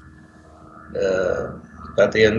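A man's voice holding one drawn-out hesitation sound, about half a second long and a second in, after a brief quiet pause.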